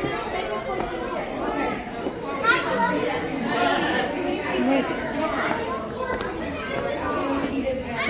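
Chatter of many overlapping voices, children and adults talking at once in a crowded school hallway.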